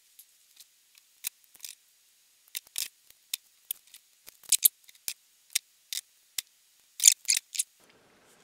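Scissors snipping open a paper packet, with paper being handled: scattered short, sharp snips and crinkles that come in small clusters.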